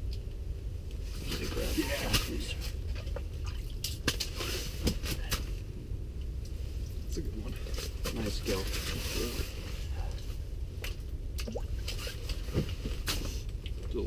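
Low, indistinct talk under a steady low rumble, with scattered short clicks and taps from rods and reels being handled.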